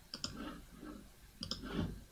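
A few quiet clicks of a computer mouse, a couple near the start and more about a second and a half in, as the chart view is changed.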